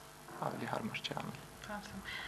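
Quiet speech only, softer than the talk around it.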